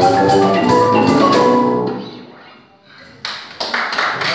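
A marimba band with cajón and guitars plays the last notes of a piece, stopping about two seconds in and ringing out. Near the end, audience applause breaks out.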